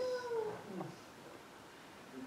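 A man's voice trailing off into the microphone: a drawn-out syllable that falls in pitch and fades within about half a second, followed by a quiet pause with only room tone.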